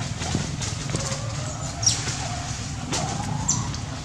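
Two short, high-pitched animal squeaks, one about two seconds in and another about a second and a half later, over a steady low background hum and a few faint clicks.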